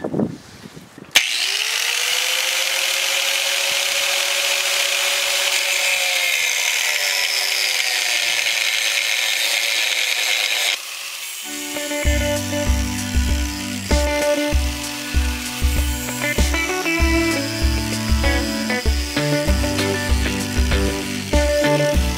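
An angle grinder starts just after a second in, its motor whining up to speed, then cuts metal with a loud steady hiss for about ten seconds, its pitch sagging slightly as the disc bites in, and stops abruptly. Background music with a steady beat follows for the rest.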